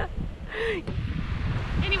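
Wind buffeting the microphone: a steady low rumble. About half a second in there is one short falling voice sound, and a spoken word comes near the end.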